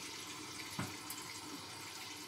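Hot water tap running steadily and faintly, left on to let the water heat up, with a soft click a little under a second in.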